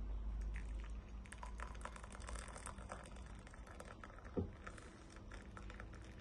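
Water poured in a thin stream from an electric kettle into a ceramic mug: a faint, crackly trickle and splash. There is one soft thump a little past halfway.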